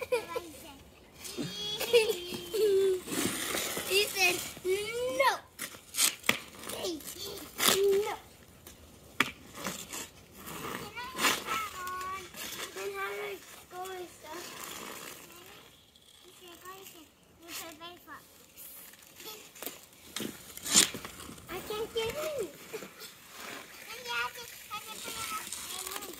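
Young children's voices chattering and calling out, high-pitched, with scattered sharp knocks of a hockey stick striking the ice.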